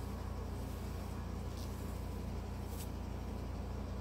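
Steady low hum of room tone with two faint, brief rustles as fingers work toilet paper out of hair.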